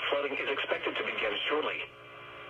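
A NOAA Weather Radio broadcast voice reading a flash flood warning through a weather radio's speaker, pausing near the end.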